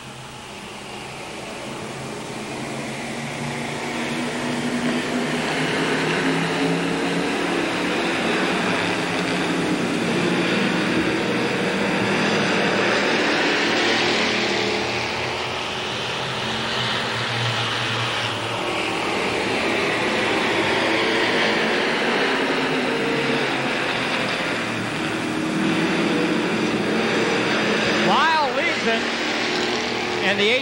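A pack of six sportsman-division stock cars racing around a paved oval. The engine noise builds over the first few seconds as the field comes up to speed, then holds steady and loud, with engine pitch sweeping up and down as cars pass.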